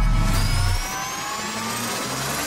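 Logo intro sound effect: a low rumble that fades about a second in, under several tones that climb slowly and steadily in pitch, building up like a riser.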